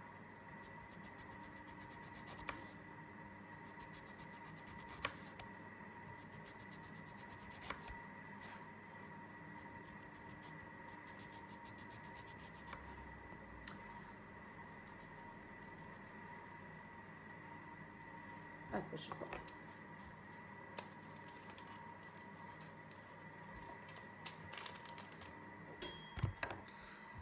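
A small kitchen knife slicing zucchini by hand: soft cuts with an isolated sharp click every few seconds and a short flurry of small clicks and rustles near the end, over a steady faint high hum.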